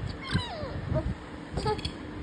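A toddler whimpering: short whiny cries that fall in pitch, one about a quarter second in and another near the end.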